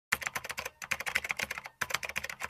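Computer keyboard typing sound effect: a rapid run of key clicks, with two short pauses.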